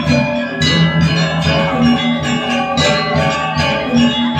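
Balinese gamelan playing: bronze metallophones ringing with many struck notes close together over held low notes.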